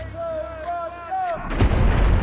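A voice calls out a countdown of a few short words, then about a second and a half in a large pyrotechnic fireball goes off with a sudden loud blast that carries on as a sustained rumble.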